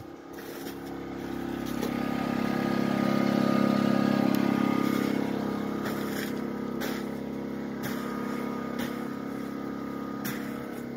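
An engine running at a steady speed with an even drone. It grows louder over the first few seconds, then holds slightly lower. Sharp clicks come about once a second in the second half.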